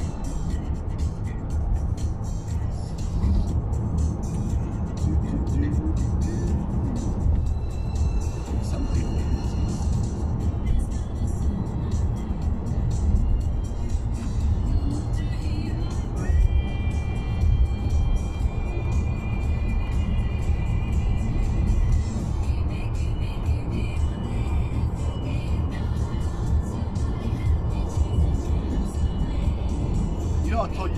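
Road and engine noise heard inside a moving car's cabin, a steady low rumble, with music playing from the car radio over it.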